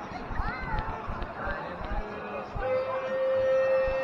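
Footsteps of someone walking amid the voices of a passing crowd, one voice rising and falling sharply in pitch about half a second in. Past halfway a steady held note comes in and stays level.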